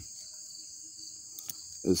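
Crickets trilling steadily and high-pitched in the background, with a faint click from a folding multi-tool being handled about one and a half seconds in.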